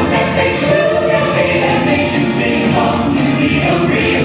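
Mixed-voice show choir of seven singing together into handheld microphones, amplified through the hall's sound system, with no break.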